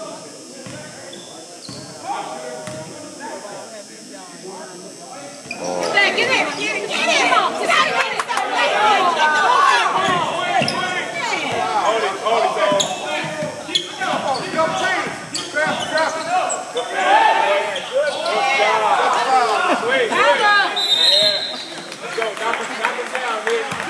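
Basketball bouncing on a hardwood gym floor during a game, with indistinct voices echoing in the hall. About six seconds in, as play gets going, it becomes louder and busier.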